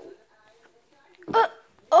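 A person's short, high-pitched vocal squeak, hiccup-like, about one and a half seconds in, after a near-quiet stretch; a spoken exclamation begins right at the end.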